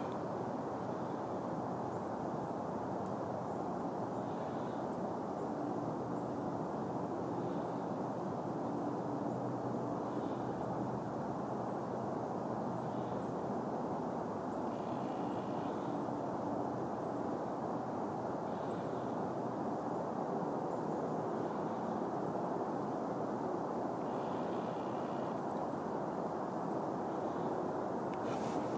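A steady, even outdoor background rumble with a faint hum in it, and faint high sounds every few seconds.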